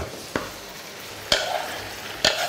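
Pork pieces frying in oil in a pan, a steady low sizzle. Two sharp clicks break it, and the second is followed by a brief louder hiss as chopped garlic is scraped off a wooden board into the pan.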